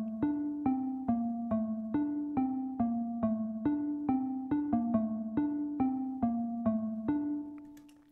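A simple synthesized xylophone melody played back in LMMS, one note at a time at 140 BPM, about two notes a second. The last note rings on and fades out near the end.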